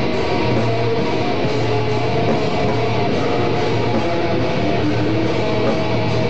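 A live band playing loud electric guitar music, the sound steady and dense with no break.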